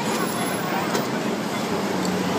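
Steady street background noise: traffic and indistinct talk from people around.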